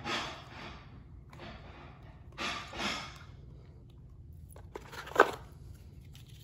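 Cardboard packaging rustling and scraping as it is handled and pulled from a box, in three or four short bursts. Near the end a few clicks, one of them sharp and the loudest sound.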